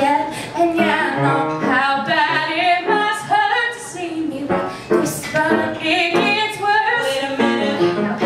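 Women singing a song through handheld stage microphones.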